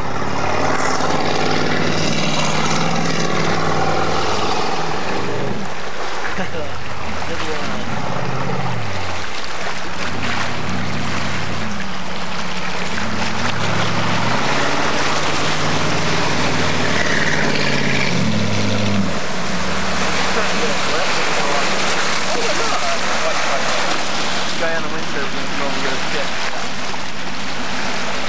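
Speedboat engine running hard, its pitch rising and falling repeatedly as the boat speeds past and turns, with voices over it.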